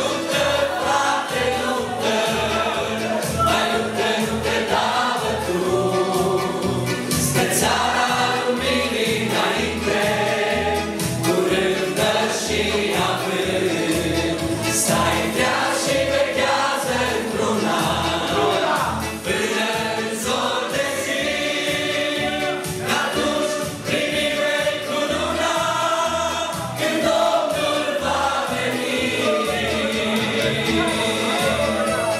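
A Christian worship song, sung by a man and a woman on microphones with a group of voices joining in, over instrumental backing with a steady beat.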